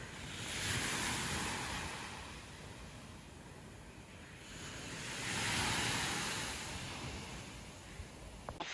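Small waves breaking and washing up a sandy beach. The surf swells twice, about a second in and again past the middle, and eases off between.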